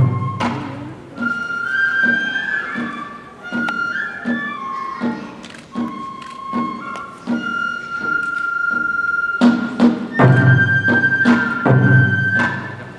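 Kagura accompaniment: a bamboo transverse flute plays a long-held, gliding melody over evenly spaced drum strikes, with a run of heavier, deeper drum beats about ten seconds in.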